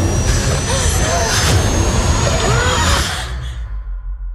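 Film-trailer sound design under a title card: a loud, dense roar over a deep rumble, with a thin high tone rising slowly through it and a few short wavering cries. It drops away sharply about three seconds in.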